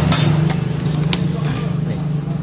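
Small motorcycle engine idling steadily, with a few sharp metallic clicks from around the rear brake.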